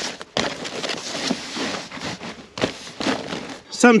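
Irregular rustling and crackling of fibreglass insulation batts being handled and pushed into place around flexible foil ducting.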